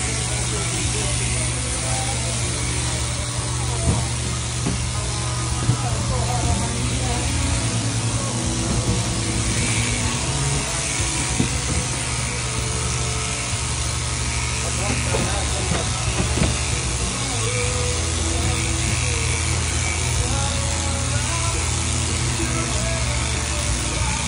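Shearing handpiece on an overhead-drive down tube running steadily, its comb and cutter clipping through a horned merino ram's thick fleece over the constant hum of the shearing machine.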